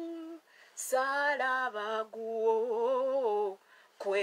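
A woman singing unaccompanied in long, wavering held notes. She breaks off briefly just before a second in, with a short breath, and pauses again near the end.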